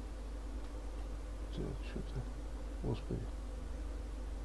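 A steady low electrical buzz, like mains hum, with a few brief faint low sounds about one and a half and three seconds in.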